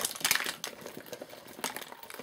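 Makeup products clicking and rattling against each other as they are tipped out of a wash bag. The clatter is loudest in the first half-second, then dies down to a few light knocks and rustles.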